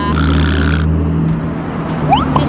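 Road traffic: a vehicle engine running with a low, steady hum, and a short hiss in the first second.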